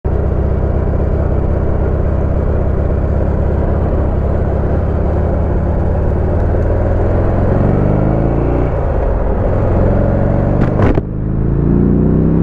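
Buell XB12X Ulysses V-twin engine running under way, a steady deep rumble. Its pitch climbs as the bike accelerates, falls back a little past the middle, and after a short dip in loudness near the end it climbs again.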